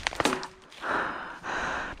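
A person breathing hard, two long breaths in the second half, after a few sharp clicks near the start.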